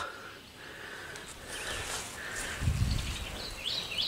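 Quiet outdoor ambience with faint bird chirps and a brief low rumble about two and a half seconds in.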